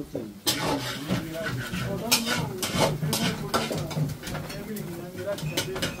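People talking indistinctly in a small room, with a few brief clicks and knocks among the voices.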